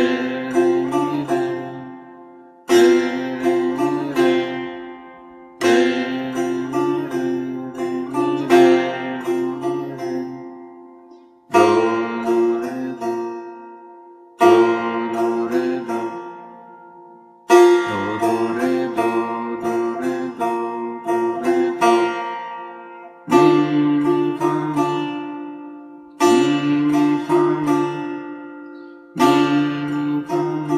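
Solo setar, plucked, playing a beginner's rhythm exercise of quarter and eighth notes: short phrases of a few notes, each opening with a strong pluck and ringing away, starting again about every three seconds.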